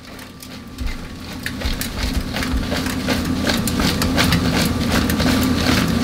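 Seasoned raw potato fries tossed in a plastic colander, with a rapid, irregular patter of small clicks and rattles. Under it runs a steady low machine hum that slowly gets louder.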